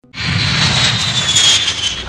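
Four-engine jet airliner flying low overhead. Its engines give a steady dense noise that starts suddenly, topped by a high whine that slowly falls in pitch as it passes.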